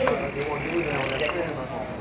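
Busy store ambience: background voices of shoppers and staff, with a few brief clicks and rattles a little past the middle.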